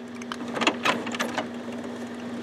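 HP 8600-series inkjet printer working through its printhead priming cycle: a run of irregular mechanical clicks and ticks over a steady hum.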